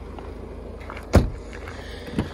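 Front passenger door of a 2015 Ford Galaxy being shut, a single solid thump about a second in, over a low steady background rumble.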